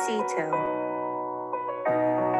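Soft background piano music of sustained chords, with a new chord struck near the end. A voice speaks briefly over it in the first half second.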